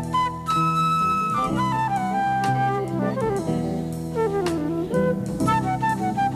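A wind instrument plays a melody over a jazz-tinged rock band, with a long falling slide in pitch a little past the middle.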